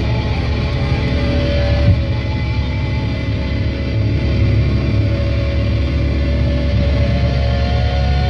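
Live heavy-metal band's stage amps droning between songs: held electric guitar tones and feedback over a steady low bass rumble, with one thump about two seconds in.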